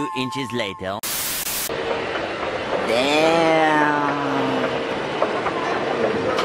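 A cartoon-style 'A Few Inches Later' title card plays: a narrator's voice over music, cut off by a short loud burst of static-like hiss about a second in. After it comes steady outdoor city ambience, and near the middle a long pitched sound that rises and then holds steady for about two seconds.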